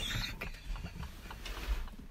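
Quiet, breathy laughter from the women, mostly air with little voice.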